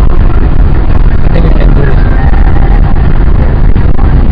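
Loud, steady engine and road noise inside the cabin of a Honda Civic EG8 (Ferio) driven fast with its engine held at high revs.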